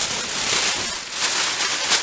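Green polka-dot packing paper crinkling and rustling as it is pulled out of a shipping box.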